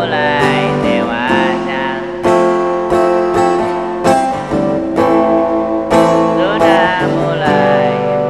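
A man singing to his own strummed acoustic guitar. His voice carries the melody over the opening two seconds and comes back near the end, with strummed chords filling the gap.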